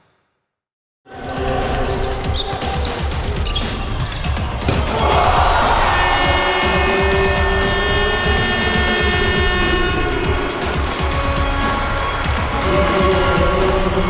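Background music mixed with arena game sound, starting about a second in after silence: a basketball bouncing on the court, then a crowd cheering from about five seconds in.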